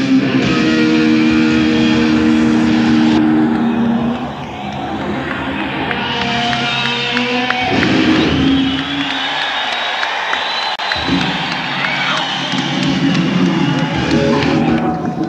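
Live rock band playing in a concert hall, the electric guitar holding long sustained notes for the first few seconds before the music loosens into a rougher stretch.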